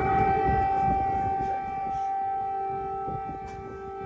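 Civil-defence air raid sirens blaring across a city, holding one steady high tone at full pitch, with a low rumble underneath; the sound eases slightly in the second half.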